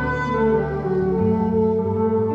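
A jazz trio of saxophone, double bass and guitar playing live, with slow held notes over the bass line.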